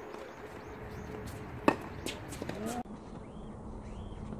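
A tennis ball struck hard by a racket once, a sharp crack a little under two seconds in, followed by a few lighter knocks.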